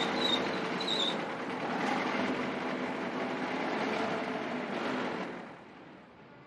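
Sound effect of a small car driving up and stopping: a dense engine and road noise that dies away about five seconds in.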